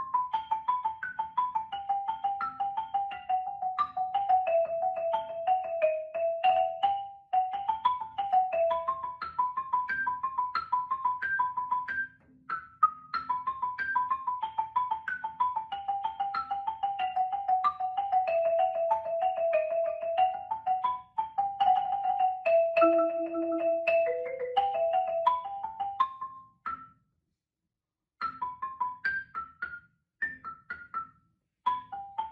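Marimba played solo with mallets: quick runs of struck wooden-bar notes forming melodic phrases that step downward in pitch, with rapid repeated strokes on sustained low notes near the end of a phrase. The playing breaks off briefly about twelve seconds in and again for about a second near the end, then starts again.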